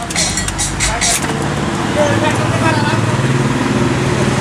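A Tata Tigor's three-cylinder engine idling, then switched off with the ignition key about a second in, its low running note stopping.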